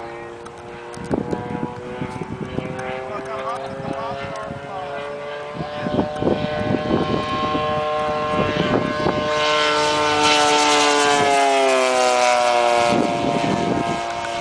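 RC Spitfire's 3W 85 cc two-stroke gas engine driving a three-blade propeller in flight, growing louder as the plane comes in. Its pitch drops as it passes close by, about twelve seconds in.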